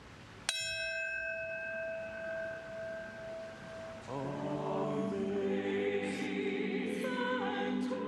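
A brass ceremonial bell struck once, ringing with a clear steady tone that fades over about three seconds. From about four seconds in, a choir takes over, singing sustained chords.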